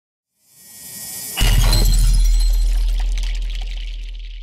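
Logo-reveal sound effect: a rising whoosh, then a sudden crash about a second and a half in, with a deep boom and a glittering, glassy high ring that slowly fades.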